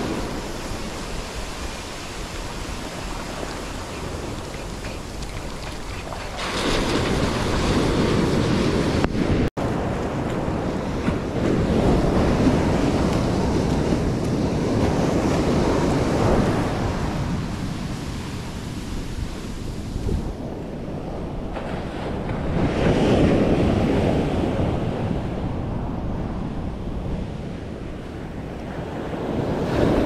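Ocean surf breaking and washing up a sandy beach, the noise swelling and ebbing every few seconds, with wind buffeting the microphone.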